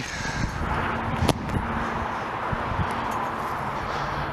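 Steady outdoor background noise with a faint low hum, and a single sharp click just over a second in.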